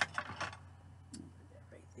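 Earrings and small items being moved aside on a tabletop: a few light clicks and scrapes in the first half second, then quiet.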